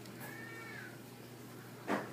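A single short, high-pitched squeak that rises and then falls in pitch, followed near the end by a sudden knock.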